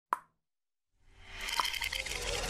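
Logo-animation sound effect: a single short pop, then a brief silence, then a shimmering swell that builds up with a click in it.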